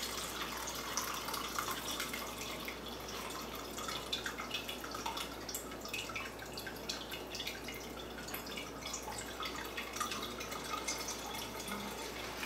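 Blended habanero pulp and Everclear pouring from a glass jar into a cheesecloth-lined stainless steel strainer, the liquid trickling and dripping through into a glass measuring cup below, with a steady patter of small irregular drips.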